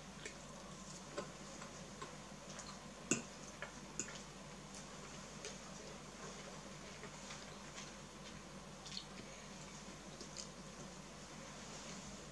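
Quiet eating at a table: scattered faint clicks and taps of a fork and fingers on food and plate, the sharpest about three seconds in, over a steady low room hum.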